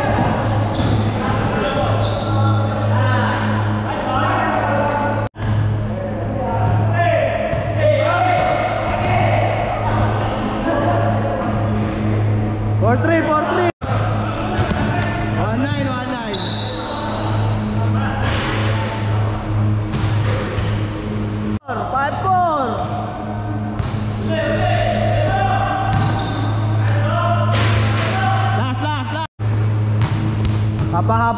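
Basketball being dribbled and bouncing on a hardwood-style indoor court during a game, echoing in a large hall, with players' voices and a steady low hum underneath. The sound cuts out briefly four times.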